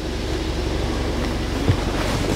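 Steady low mechanical hum and hiss of running machinery, with a light click near the end.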